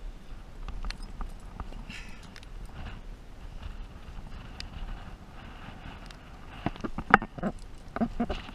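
Wind buffeting the microphone in a steady low rumble, with scattered clicks and knocks from a climber's hands, shoes and gear against the rock. A quicker run of louder knocks comes near the end.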